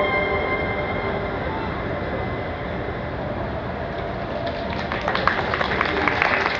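The final held note of the violin and cello fades away within the first second or two, leaving steady hall noise, then audience applause breaks out about four and a half seconds in and grows louder.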